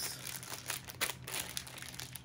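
Crinkly packaging of a pair of unopened gloves being handled, giving a run of small, irregular crackles.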